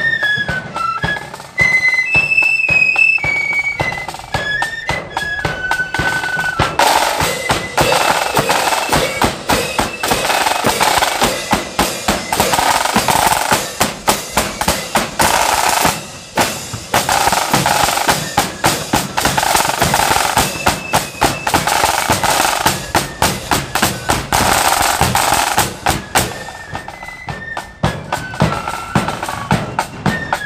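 Marching flute band playing: a flute melody with drum beats, then snare drums playing long continuous rolls for most of the middle, with the flute melody coming back clearly near the end.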